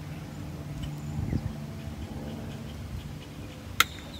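A single sharp click near the end, from wiring connectors being handled, over a steady low hum and faint rustling.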